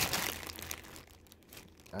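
Clear plastic packaging crinkling as it is handled, busiest in the first second and dying down after about a second.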